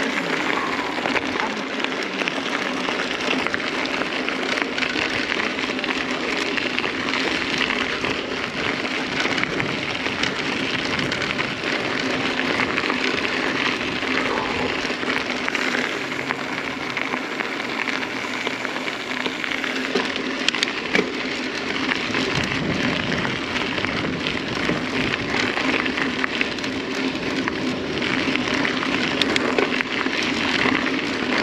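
Mountain bike tyres rolling over a gravel and dirt road: a steady crackling crunch that runs on without a break.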